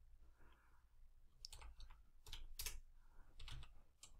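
Computer keyboard being typed on: a few faint, irregular keystrokes, most of them in the second half.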